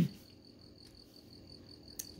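Faint, steady high-pitched trill over quiet room tone through a pause in speech. The tail of a spoken word trails off at the start, and a small tick comes near the end.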